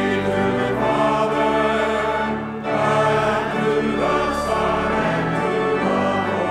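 Church choir singing with organ accompaniment, with a short break between phrases about two and a half seconds in.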